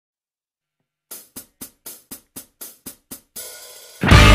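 Hi-hat count-in at the start of a song. After about a second of silence, nine short hits come about four a second, then a longer open hit rings on near the end.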